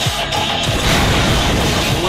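Action film trailer soundtrack: intense music with heavy low hits, building into a crash in the second half.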